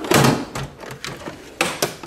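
Steel tool chest drawer sliding shut on its runners, loudest in the first half-second, followed near the end by shorter rattling slides as the next drawer is pulled open.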